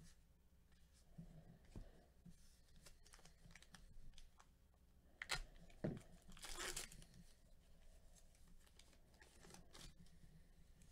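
A trading-card pack's plastic wrapper being torn open: two sharp crackles a little past halfway, then a short rip lasting about half a second. Faint rustling of cards being handled around it.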